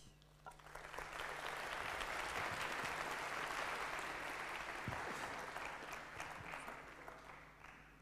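An audience in a lecture hall applauding. The clapping starts about half a second in, is at full strength within a second, holds, then dies away near the end.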